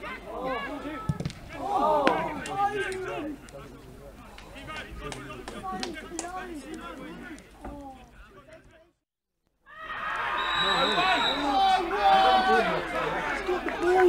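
Men's voices shouting and calling across a football pitch, with a few sharp knocks in the first half. The sound drops out for under a second about nine seconds in, and then several voices overlap more loudly.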